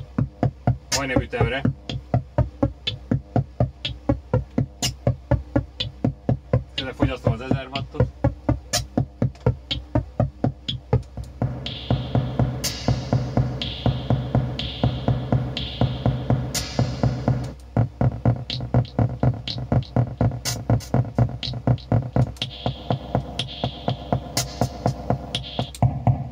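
Modular synthesizer playing a steady electronic drum-machine pattern, about three to four short hits a second, over a low held tone. From about twelve seconds in, a run of high notes about a second each joins the pattern.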